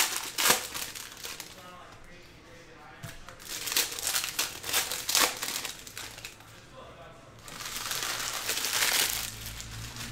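Foil trading-card pack wrappers crinkling as they are handled, in three bursts: at the very start, again about four to five seconds in, and once more from about seven and a half to nine seconds.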